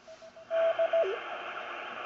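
Receiver of a TenTec Century 21 CW transceiver: a steady hiss of band noise comes up about half a second in. A whistling beat note sounds in short broken pieces and dips lower in pitch just after a second in.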